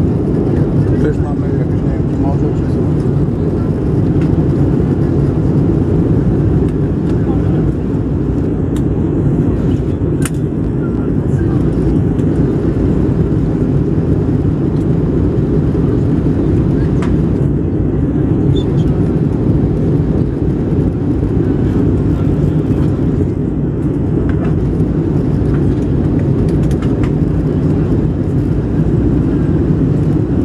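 Steady low-pitched roar of an airliner cabin in flight during the descent for landing: jet engine and airflow noise at an even level throughout, with a brief click about ten seconds in.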